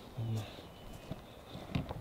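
Footsteps of people walking on a dirt trail through brush: a few soft irregular steps. A short low voiced sound, like a grunt or murmur, comes about a quarter second in and is the loudest thing heard.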